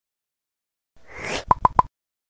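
Intro-animation sound effect: after a second of silence, a short whoosh, then three quick pitched pops in even succession that stop abruptly.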